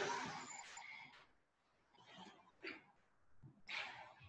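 Near quiet, with a few faint soft sounds of a person moving on a yoga mat, the clearest one shortly before the end as she lowers toward the floor.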